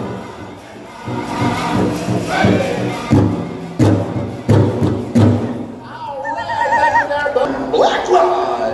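Powwow drum group singing over a steady beat on a big drum for jingle dress dancing. The drumming and song stop about six seconds in, followed by a brief high wavering voice.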